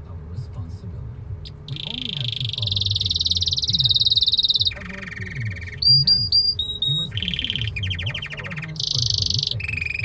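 Domestic canary singing in a string of varied phrases, starting about two seconds in: a long rolling trill, then a lower trill, clear sliding whistled notes and several fast rattling trills, one after another.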